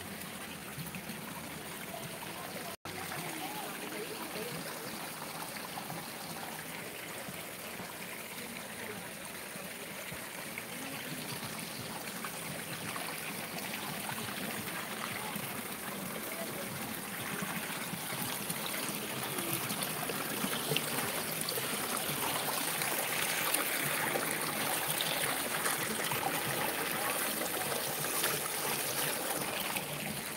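Spring water running out of a plastic pipe and trickling over rocks into a stream, a steady splashing flow that grows louder in the second half.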